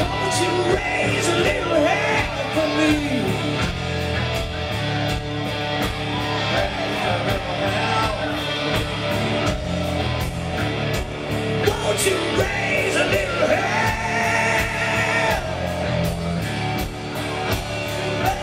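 Live hard rock band playing in a club: distorted electric guitars, bass and a steady drum beat, with a voice singing and yelling over the music.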